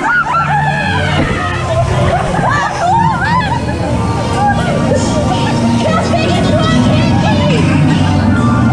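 Riders screaming and laughing on an amusement-park ride, loudest in the first few seconds, over the ride's music and a steady low hum.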